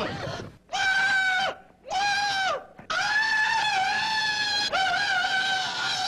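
A voice letting out four long, high-pitched screams, each held on one pitch; the last two are the longest and nearly run together.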